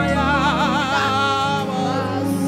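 Male worship leader singing a long, wavering held line without words into the microphone over steady sustained backing chords, in a gospel worship song.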